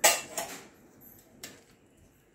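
Steel kitchen utensils clanking against a metal kadai: one sharp clank, a second lighter one just after, and a faint tap about a second and a half in.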